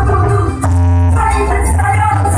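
Loud live dangdut koplo music through a PA system, with a heavy bass beat and melody lines; a short break about half a second in gives way to a held note.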